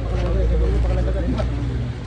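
Men's voices talking, not clearly, over a steady low rumble.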